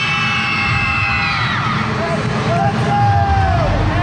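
A cheerleading team in a huddle yelling together: a long, high-pitched group yell held for about a second and a half, then a shorter, lower drawn-out shout near the end.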